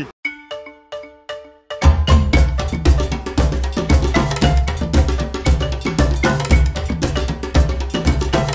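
Traditional Guinean percussion music: a few ringing strokes at first, then, from about two seconds in, drums and bell playing a fast, driving rhythm with heavy low drum beats.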